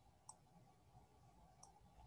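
Near silence with two faint clicks, about a second and a half apart.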